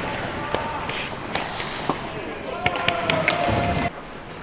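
Ice hockey practice on a rink: sharp clicks of sticks on the puck over a steady hiss of skates on ice. Near the end a player calls out in one long shout.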